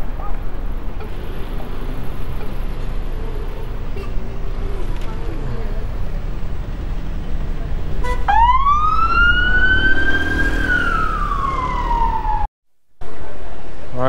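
Emergency vehicle siren sounding one long wail, starting about eight seconds in: it rises sharply, holds, then falls slowly before cutting off. Underneath is steady wind and traffic rumble from riding a scooter through the street.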